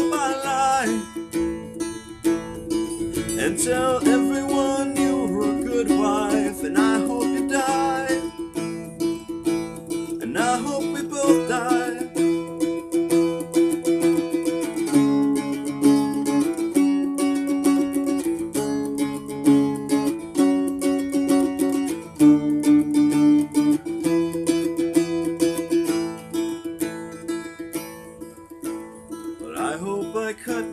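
Small four-string acoustic guitar in open A-E-A-E tuning, played with a slide: strummed chords over a steady droning note. Sliding pitch glides come at the start and a couple more times early on, then the chords change about once a second.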